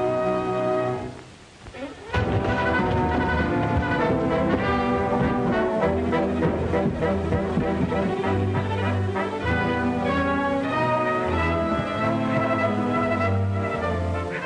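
Orchestral film score with prominent brass. Sustained chords fade away about a second in, then the music comes back loud with a sharp accent about two seconds in and runs on in agitated brass phrases.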